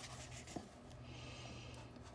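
Faint rubbing and rustling of a hardcover picture book's paper pages as a hand holds and settles the open spread, with a light tick about half a second in.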